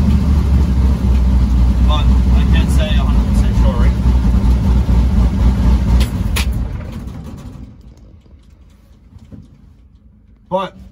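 Twin-turbo destroked 6-litre V8 of a 1957 Chevy pickup running with a steady low rumble, heard from inside the cab. About six seconds in the engine is shut off and the rumble dies away over the next two seconds to a quiet cab.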